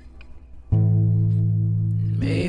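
Music from a song: after a short, quieter lull, a low note comes in suddenly about two-thirds of a second in and is held, with no singing.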